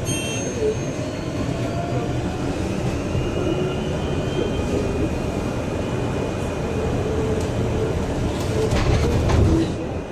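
Upper deck of a battery-electric Volvo BZL double-decker bus on the move: steady road and body rumble with a thin electric-motor whine, rising in pitch early on. Near the end a louder clatter of knocks and rattles from the bus body.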